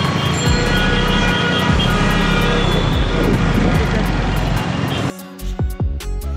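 Busy street traffic with auto-rickshaws and other vehicles running and voices mixed in. About five seconds in, it cuts abruptly to background music with a beat.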